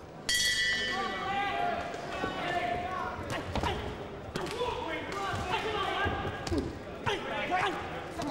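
Boxing ring bell struck once to start the first round, ringing out and fading over about a second. Then shouting voices and several dull thuds from the boxers' exchanges.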